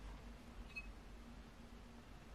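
Near silence: faint room tone with a low steady hum, and one brief faint high chirp under a second in.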